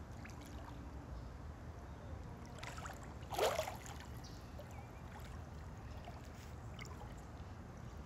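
Pool water lapping gently close to the microphone over a low, steady rumble. About three and a half seconds in there is one brief, louder sound that rises in pitch.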